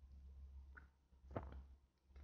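Near silence over a low steady hum, broken by two faint clicks from the computer being operated, one a little under a second in and a sharper one about a second and a half in.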